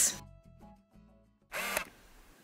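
A woman's voice trailing off, then about a second of near quiet with faint steady tones, then a brief voice-like burst about one and a half seconds in.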